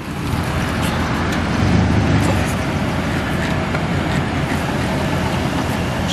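The 1991 Chevrolet S10 Blazer's 4.3-litre V6 gas engine running steadily, a little louder about two seconds in.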